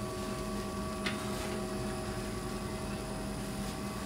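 Steady background machine hum made of several constant tones over a low noise, with a faint tick about a second in.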